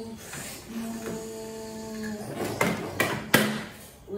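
A steady pitched hum for about a second and a half, then plastic Duplo blocks clattering as a stacked tower is knocked over onto a tabletop, with several sharp knocks, the loudest near the end.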